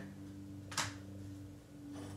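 Quiet room with a steady low hum and a single short, soft swish a little under a second in.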